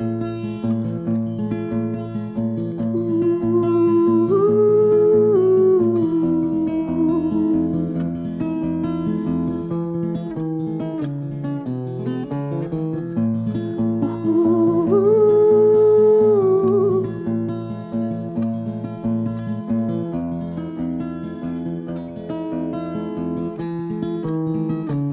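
Yamaha cutaway acoustic guitar fingerpicked with a capo: a steady pulsing bass note under picked chords. Twice, about four seconds in and again about fifteen seconds in, a wordless held vocal melody with a slight waver rises over the guitar.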